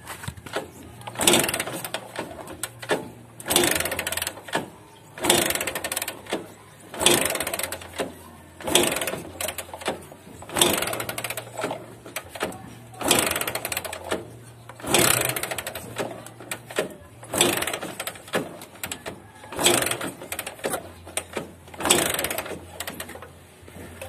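Bajaj CT100 single-cylinder four-stroke engine being kick-started over and over, about one kick every two seconds. Each kick turns the engine over briefly but it does not catch: a long-unused engine that will not fire yet.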